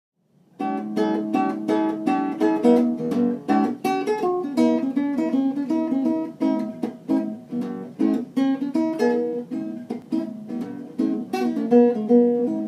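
Nylon-string acoustic guitar playing a blues intro, chords strummed in a steady rhythm of about three strokes a second, starting about half a second in.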